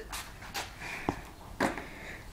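A few faint scuffs and one light tap a little after a second in: sneaker footsteps on a concrete patio and a skateboard being handled.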